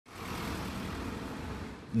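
Street ambience: a steady hiss with the low rumble of a vehicle engine running, easing slightly near the end.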